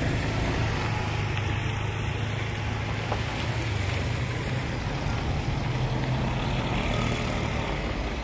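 A vehicle engine idling steadily, a low even hum.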